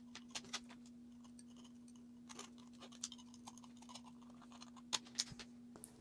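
Faint scattered scratches and ticks of a steel ice pick tip working over a 3D-printed PLA stamp, picking off stray strings and print artifacts, over a steady faint hum.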